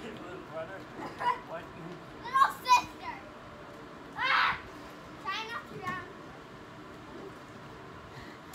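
Young people's voices shouting and squealing in several short cries, with one longer high-pitched shriek a little over four seconds in, the loudest sound.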